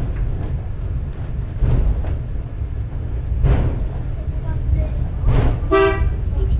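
Takao-san funicular cable car running uphill, heard from inside the cabin: a steady low rumble from the car on its rails, with a regular knock about every two seconds. A short pitched tone sounds just before the end.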